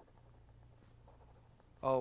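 Faint scratching of a pen writing on paper over a low steady hum; a man's voice begins near the end.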